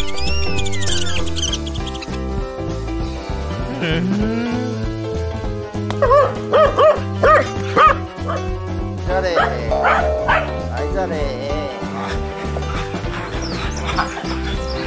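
Welsh corgis barking: four loud, sharp barks in quick succession, then a few more yips a couple of seconds later, over steady background music.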